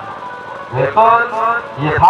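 A man's commentary voice with music, coming in about three-quarters of a second in after a quieter start.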